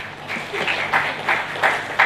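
Audience applause in a hall, many hands clapping, growing louder about half a second in.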